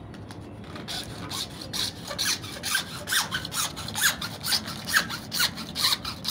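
Hand hacksaw cutting through white PVC pipe: after about a second, quick back-and-forth strokes of the blade, about four a second, with short squeaks on some strokes.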